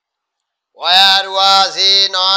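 A man's voice reciting in a loud sing-song chant, drawing out each syllable on a level pitch; it starts about three-quarters of a second in, after a moment of silence.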